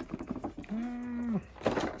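A short, held, wordless vocal 'hmm' or groan, about two-thirds of a second long in the middle, its pitch rising as it starts and dropping as it ends. Before it come faint clicks of a plastic-windowed action-figure box being handled.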